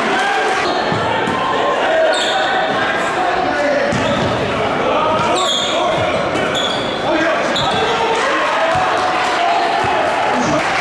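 Basketball game in a gymnasium: a ball bouncing on the hardwood court and sneakers squeaking a few times, under a steady din of indistinct voices from crowd and players, echoing in the large hall.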